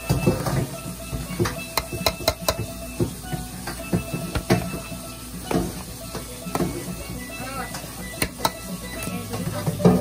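Metal masher tines clicking and scraping against a stainless steel bowl in quick, irregular strokes while mashing boiled potato, over background music.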